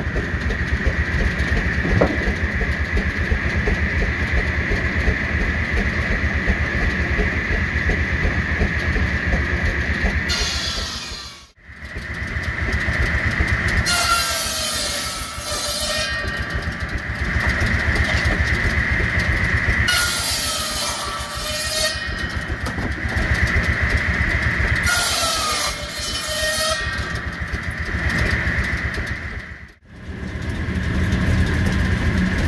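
A steam engine runs a belt-driven circular saw, with a low engine beat under a steady high whine from the spinning blade. Three times in the second half the blade cuts through wood, and its pitch drops under the load of each cut. The sound breaks off briefly about a third of the way in.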